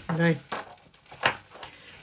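A short spoken word, then faint handling sounds: a couple of light clicks from a metal chain strap and its clasp being fitted by hand to a crocheted bag.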